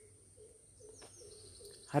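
A bird calling faintly in the background: a run of short, low, evenly spaced notes, two or three a second, with a brief high thin whistle about a second in.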